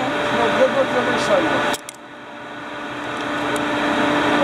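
Steady hum of a ship's machinery with low background voices. The sound drops abruptly about two seconds in, then swells slowly back up.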